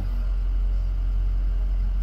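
Steady low rumble of a vehicle heard from inside its cabin.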